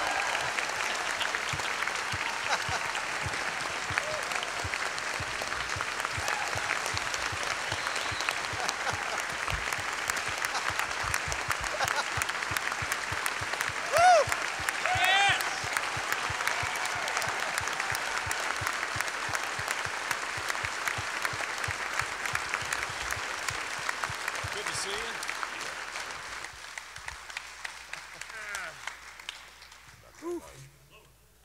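Concert hall audience applauding in a long, steady ovation that tapers off and dies away a few seconds before the end. A couple of brief voices rise above the clapping about halfway through.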